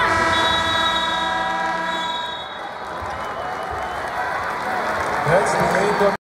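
Arena game horn sounding one steady blast of about two seconds, marking the end of the half, over the noise of a large crowd.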